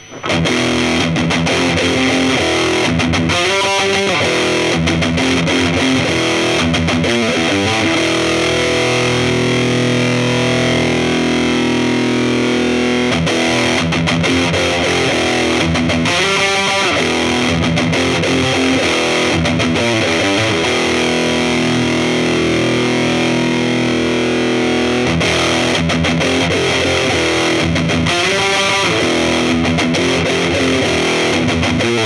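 Electric guitar, a Kramer Assault 220 Plus, played through a TC Electronic Rottweiler distortion pedal into a Laney CUB12 valve amp: heavily distorted riffs with a few chords left ringing.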